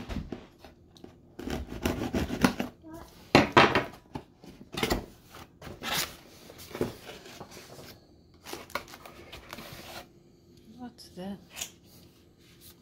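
A knife slicing through packing tape on a cardboard box, then the box lid pulled open and the cardboard and plastic-wrapped contents handled: a string of scraping, tearing and rustling noises, busiest in the first seven seconds and quieter after.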